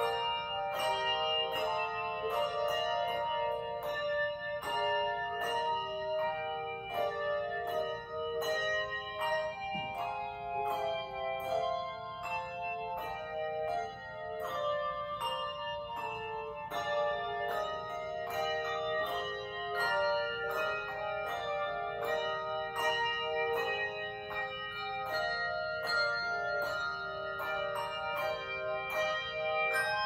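Handbell choir playing a piece on brass handbells: a steady stream of bells struck in quick succession, several notes sounding together and ringing on over one another.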